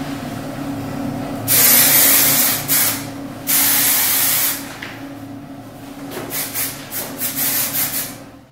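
Aerosol hairspray can spraying onto hair: two long hisses of a second or more each, then a run of short quick spurts near the end.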